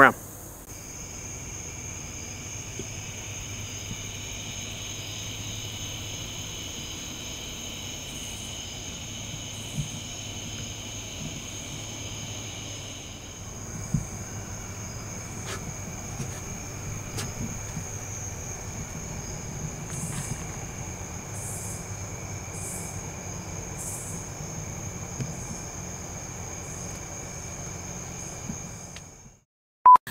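Night-time chorus of crickets and other insects: a steady high trilling in several pitches at once, one of them dropping out about halfway, over a faint low rumble.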